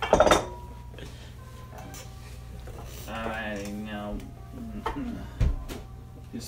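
A burst of laughter at the start, then scattered light clinks and knocks of glass bowls and dishes on a kitchen counter while raw ground meat is mixed by hand, with a low knock near the end.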